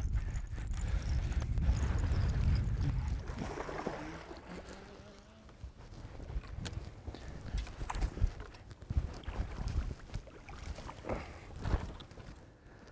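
Low wind rumble on the microphone, loudest in the first few seconds, with a few sharp clicks and knocks later on.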